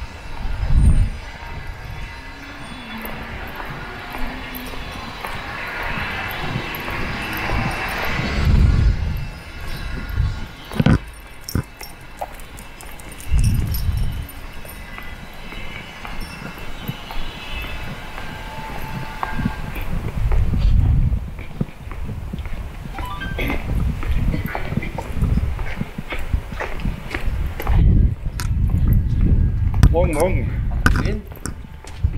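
Residential street ambience heard on the move, with irregular low rumbling bumps on the microphone and a swell of passing traffic noise that rises and fades between about five and nine seconds in.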